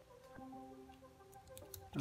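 Faint handling of paper model-boat pieces: a few light ticks and rustles, over faint sustained tones.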